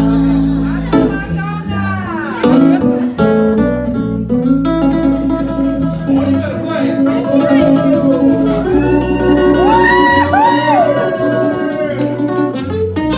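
Live acoustic band playing a slow country-soul song: a man singing over acoustic guitars at first, then the guitars carrying on alone, with a lead line of bending notes near the end.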